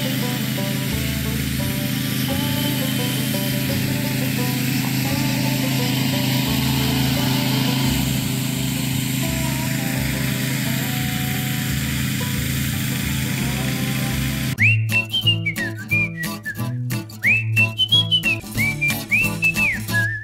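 A motor-driven pesticide sprayer runs steadily, with the hiss of fungicide mist from a hose spray gun. About fourteen seconds in, it gives way suddenly to a whistled tune over a light beat.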